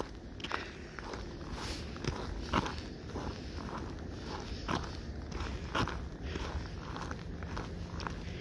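Footsteps on packed snow: irregular steps, about one a second.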